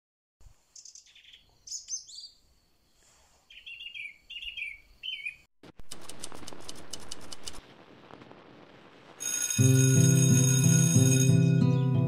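Short bird chirps for the first five seconds, then a steady hiss with rapid clicks, then from about nine and a half seconds loud music on a sustained chord.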